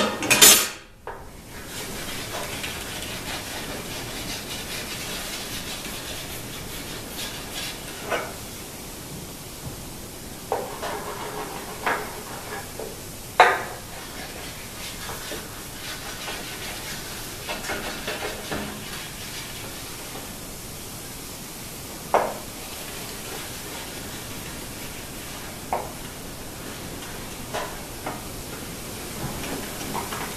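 A block of beeswax rubbed back and forth along the metal fence and top of a table saw, a steady scraping rub that waxes the surfaces so the tenon jig will glide. A loud knock comes about half a second in, and lighter knocks follow now and then.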